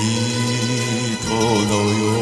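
A singer holding one long note of a Japanese pop ballad over its backing accompaniment, with vibrato setting in a little past halfway.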